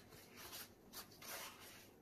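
Faint rubbing and rustling of a paper towel as a resin-coated wooden stir stick is wiped clean, in a few short strokes.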